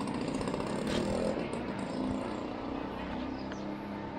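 A small engine running steadily with an even buzzing drone.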